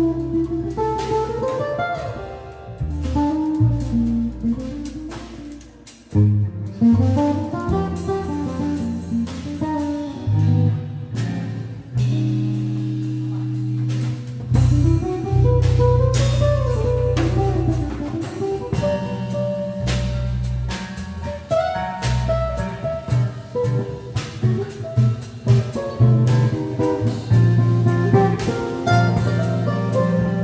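Jazz trio playing live: guitar taking a melodic line over electric bass and drum kit, with cymbals and drums striking throughout. The music drops briefly about six seconds in, then picks up again.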